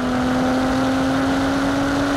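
Car driving along a road: a steady humming tone from the running vehicle, creeping slightly up in pitch, over a wash of tyre and road noise.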